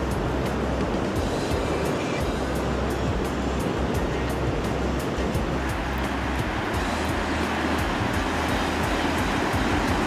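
Sea surf washing over rocks along the shore, a steady rush of breaking waves, under background music with a light regular beat.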